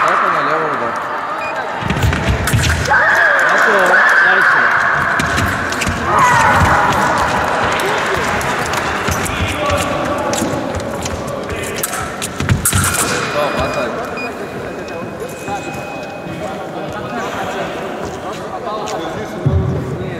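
Sabre fencers shouting after touches: one long high shout about three seconds in and a shorter one around six seconds, with sharp stamps and footwork thuds on the piste around two and twelve seconds.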